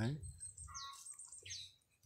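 Birds calling: a few short high chirps and two descending whistled notes, one at a time.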